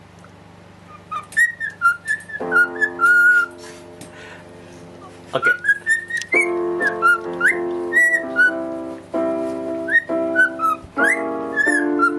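Cockatiel whistling a tune in short sliding notes, with electronic keyboard chords played beneath it. The whistling begins about a second in and the chords join shortly after, dropping out briefly midway before resuming.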